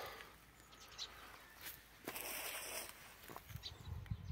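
Faint, scattered sparrow chirps over quiet outdoor background, with a brief soft hiss about two seconds in and a few low bumps near the end.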